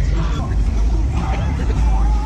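Slow street traffic of cruising cars, their engines and exhausts making a steady low drone, mixed with the chatter of people standing along the street.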